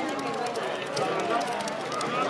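Indistinct background chatter of several men's voices, with a few faint clicks.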